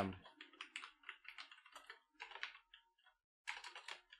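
Computer keyboard typing: a run of faint, quick key clicks as a word is typed, pausing briefly about two and a half seconds in before a last flurry of keystrokes.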